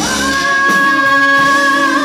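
Live rock band playing, with female vocalists singing one long held note for almost two seconds over electric guitars, bass and drums.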